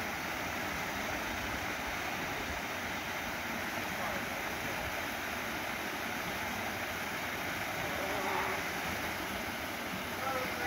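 Small waterfall pouring over rock ledges into a pool: a steady rush of falling water.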